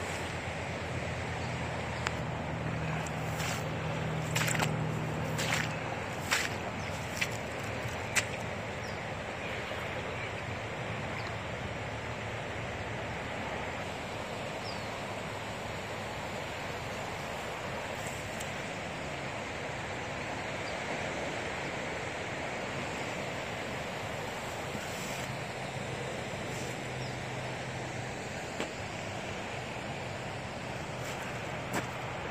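Steady rushing of the flood-swollen Russian River, with a few sharp clicks in the first several seconds and a faint low hum now and then.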